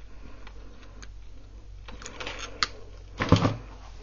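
Small metallic clicks and light chain rattling as pliers close a metal hook onto a steel chain, with a louder knock about three seconds in.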